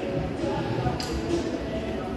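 Gym room sound of indistinct background voices and music, with a short metallic clink about a second in as a plate-loaded EZ curl bar is lifted off the floor.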